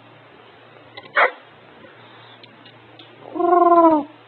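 African grey parrot vocalising: a short sharp squeak about a second in, then a single drawn-out pitched call that falls slightly in pitch near the end.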